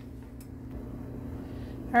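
Steady low hum of room background, with a faint click about half a second in.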